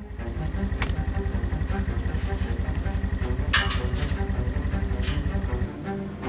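A Polaris side-by-side utility vehicle's engine running at low revs as a fast, low pulsing under background music. Three sharp swishes come through, one loudest about three and a half seconds in, and the engine sound stops just before the end.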